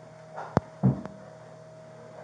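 A steady electrical hum, broken about half a second in by a sharp click, then a dull thump and a lighter knock just after.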